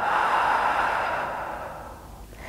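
A woman's long audible exhale through the mouth, a breathy rush that fades away over about two seconds.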